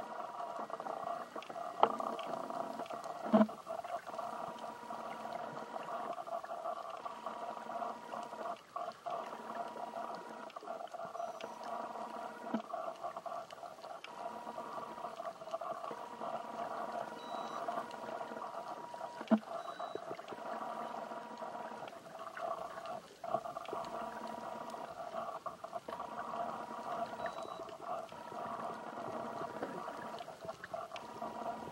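Underwater sound picked up by a camera while snorkeling: a steady, muffled wash of water with a steady hum-like tone that comes and goes. A few sharp knocks are the loudest sounds, about two and three and a half seconds in and again near the middle.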